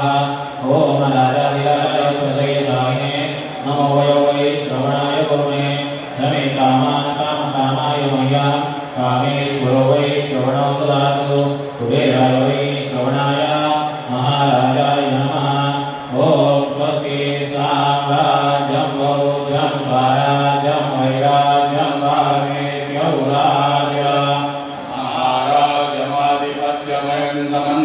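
Hindu devotional chanting: a voice intoning short, repeating mantra phrases over a steady low drone.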